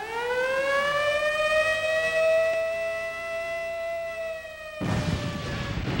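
Air-raid siren winding up from a low pitch to a long, steady wail, with a second siren tone wavering beneath it. The wail fades about five seconds in as a steady rushing noise takes over.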